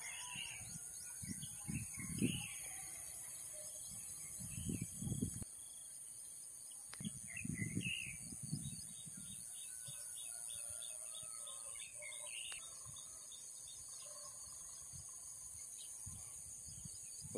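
Quiet rural outdoor ambience: small birds chirping here and there over a steady high-pitched hiss, with a few brief low rumbles, like wind or handling on the microphone, in the first half.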